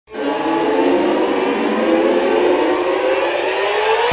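Song intro: a dense, noisy synth swell that fades in at once and rises slowly in pitch, climbing more steeply near the end as it builds toward the song.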